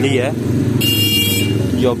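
Motorcycle engine idling steadily close by, with a short high-pitched electronic beep about a second in.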